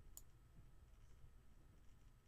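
Near silence with a low steady hum and a single faint, sharp click just after the start.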